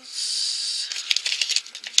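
Plastic toy packaging rustling under a hand: a short steady hiss, then a quick run of crackles and clicks about halfway through.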